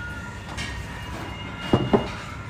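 Noodles being slurped and eaten from bowls at a table over a steady low background hum, with two short loud knocks close together near the end.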